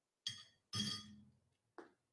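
Two ringing glass clinks about half a second apart as glass hot sauce bottles are handled, the second louder, with a short low hum under it and a small tap near the end.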